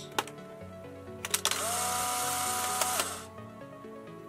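Polaroid 636 Closeup instant camera firing: a few sharp mechanical clicks, then the camera's motor whirring for under two seconds as it ejects the exposed print, its pitch rising briefly as it spins up and then holding steady before cutting off. Background music plays underneath.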